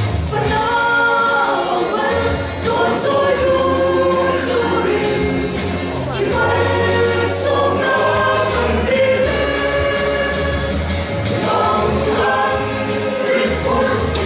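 Mixed choir of men and women singing together, with low sustained bass notes underneath that change every second or two.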